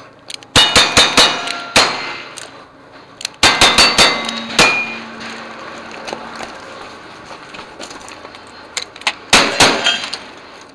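Revolver shots in two fast strings of about five each, with steel plate targets ringing after the hits. After a pause, two shotgun shots close together near the end.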